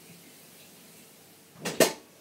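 Lip balm being put on: mostly quiet, with two quick clicks close together near the end.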